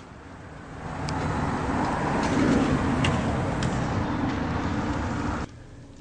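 Road traffic noise, a steady rumble that swells as if a vehicle is passing by, with a few faint clicks; it cuts off abruptly near the end.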